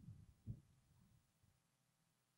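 A few soft, low thumps in near silence, the strongest about half a second in, dying away within the next second.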